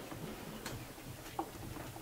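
Oil pastel worked onto the board by hand in short strokes, giving irregular small ticks and scratches, with one sharper tick about a second and a half in.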